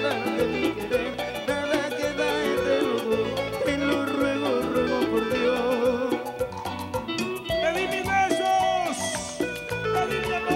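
A live Latin dance band plays an instrumental break between sung verses. A lead melody runs over a steady, busy beat from timbales, cymbals and hand drums.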